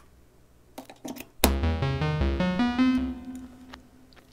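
Synthesizers.com modular synth voice playing a quick rising eight-step sequence from two daisy-chained Q179 Envelope++ modules; each note steps up in pitch, and the last is held and fades away. A few soft clicks come before it, and the sequence starts about a second and a half in.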